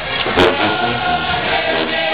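College marching band playing: held brass chords over drums, with one sharp percussive hit about half a second in.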